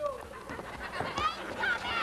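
Spectators yelling in short, high, hoarse shouts, one after another, with pitch sliding up and down.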